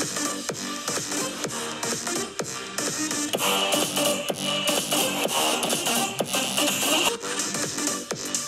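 Electronic dance track played through laptop speakers in a side-by-side test of the Dell XPS 15's quad speakers against the 15-inch M2 MacBook Air's six-speaker system. The playback switches from one laptop to the other about three seconds in and switches back about seven seconds in.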